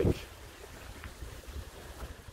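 Wind buffeting the microphone outdoors: an irregular low rumble that flickers in strength, with a faint steady hiss above it.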